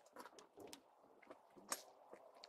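A few faint clicks as the latch of a motorhome's exterior battery-bay compartment door is released and the door is swung up open, the loudest click near the end.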